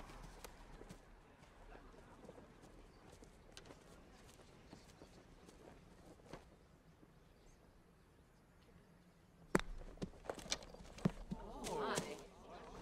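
Faint quiet outdoor ambience, then a single sharp click of a golf putter striking the ball about three-quarters of the way through, followed by several lighter clicks. The putt misses badly, the ball running off the green into the rough.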